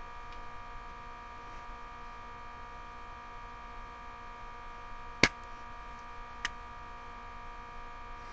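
Steady electrical hum made of several steady tones, with one sharp click about five seconds in and a fainter click a second later.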